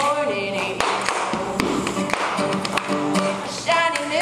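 Live acoustic string-band music: a woman singing lead over a banjo, with sharp taps keeping the beat.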